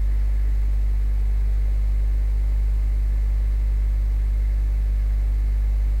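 Steady low electrical hum with a faint hiss underneath, unchanging throughout: the background noise of the recording microphone.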